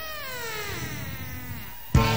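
A single drawn-out note alone in a break in a live rock band's playing, rising briefly and then sliding slowly down in pitch. The full band crashes back in right at the end.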